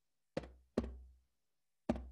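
A drum struck in a slow heartbeat pattern: two beats close together, then a pause and another beat near the end, each with a low ring that dies away quickly.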